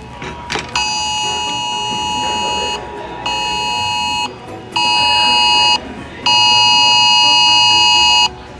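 Smartphone Wireless Emergency Alert attention signal from a nationwide test of the alert system. It is a harsh, steady two-tone blare in four blasts: a long one, two short ones, and another long, louder one near the end.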